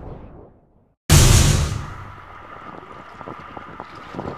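Music fades out into a moment of silence. Then beach audio cuts in with a sudden loud rush of sea water and wind on the microphone, settling into a steady wash.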